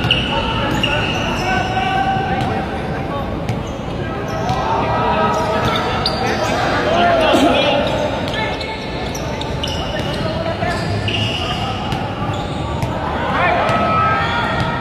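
Pickup basketball game on a hard court: a ball bouncing with scattered knocks of play, and players' voices calling out without clear words.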